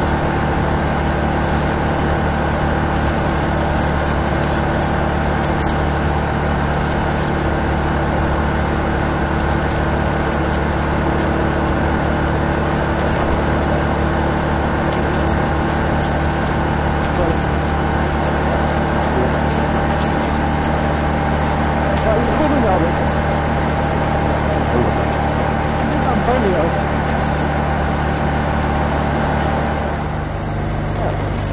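Honda ST1300 Pan European motorcycle's V4 engine running at a steady cruise, a level drone mixed with riding noise, with no change in pitch or loudness throughout.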